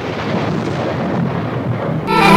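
Steady, rumbling, thunder-like noise effect that starts abruptly out of silence.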